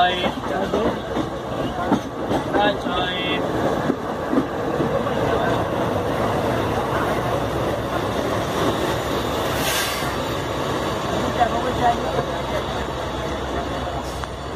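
Indian Railways passenger coach running along the track, heard from the moving coach: a steady rumble of wheels on rail, with irregular clatter over joints and points in the first few seconds.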